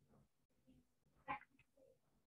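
Near silence: room tone over an online call, broken once by a single brief, faint sound a little past a second in.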